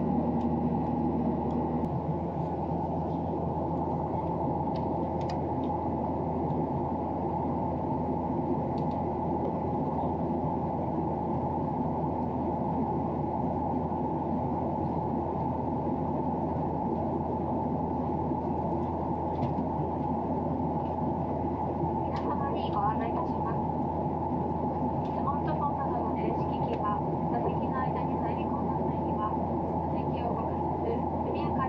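Steady jet airliner cabin noise, a constant low rush from the engines and airflow. Faint muffled voices come in over it in the last third.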